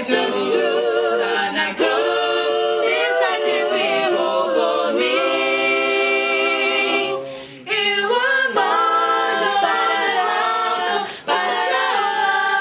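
Small mixed group of young male and female voices singing a cappella together, several sung lines at once, with a short break for breath about seven seconds in and a brief dip near the end.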